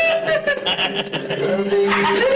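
A group of people laughing heartily, with long drawn-out laughs, over background music.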